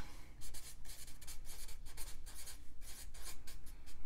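Felt-tip marker writing on paper: a run of short strokes as words are written out.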